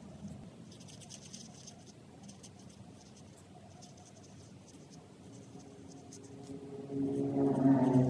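Felt-tip marker scratching across paper in short strokes as colour is filled in. Near the end a much louder droning tone with several pitches swells up over it.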